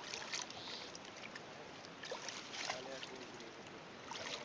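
Shallow pond water splashing and sloshing as hands grope through it, in a few irregular splashes over a low steady lapping.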